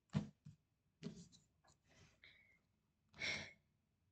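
A woman's quiet breathing with a few faint mouth sounds, then a breathy sigh about three seconds in.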